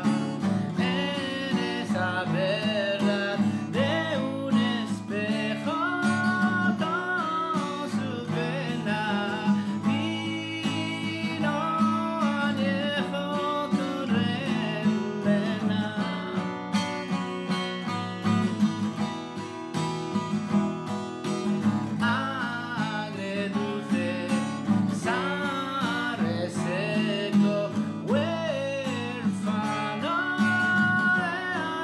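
A man singing a slow melody to his own acoustic guitar accompaniment.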